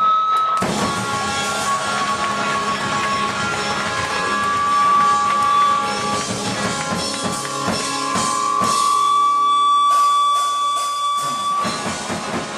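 Live rock band playing loud through a club PA: distorted electric guitars, bass guitar and drum kit, with a long high note held for several seconds in the second half.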